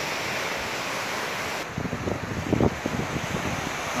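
Rough sea breaking on a rocky shore, a steady wash of surf, with wind blowing across the microphone; from about halfway the wind buffets the microphone in gusts.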